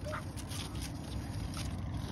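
American pit bull terrier giving a short, faint whine right at the start, over a steady low rumble of road traffic and wind.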